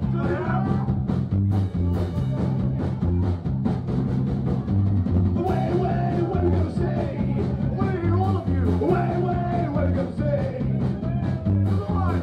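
Live rock band playing loudly: electric guitars, bass and drums, with a sung vocal line over them.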